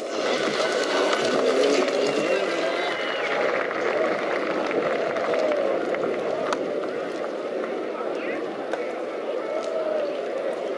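Indistinct voices over a steady background din, with no clear words.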